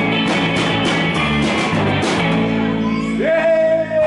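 Live rock-and-roll band playing electric guitars and drums. The drumming stops a little before three seconds in and the song closes on one long held note.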